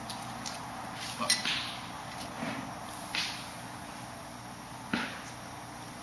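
Faint handling noises from a plastic bag and gas hose being worked by hand: a few light rustles, then one sharp click about five seconds in, over a steady low hiss.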